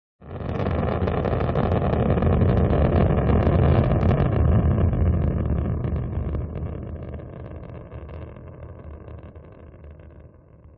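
Rocket engine firing, as a dubbed sound effect: a deep rumble that starts suddenly, grows over the first few seconds and then slowly fades away.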